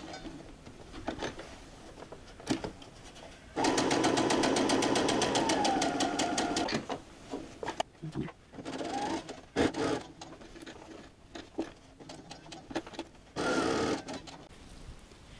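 Electric sewing machine stitching: a run of about three seconds of rapid, even needle strokes over a motor whine that drops in pitch as it slows, then a short burst just before the end. The stitches are a few reinforcing stitches sewn across a seam. Light clicks and fabric handling fill the gaps.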